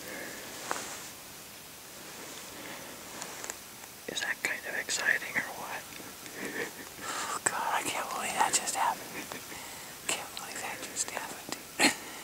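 A man whispering in short, breathy phrases, with a sharp click near the end.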